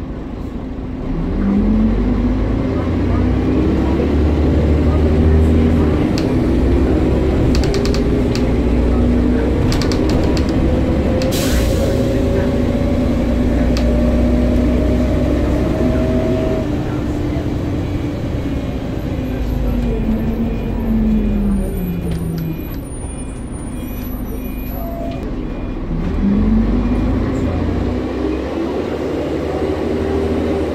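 Bus heard from inside the saloon: the engine's low rumble and a transmission whine climb steadily in pitch as the bus pulls away and speeds up, then fall as it slows, then climb again near the end as it pulls away once more. A short hiss of air about eleven seconds in.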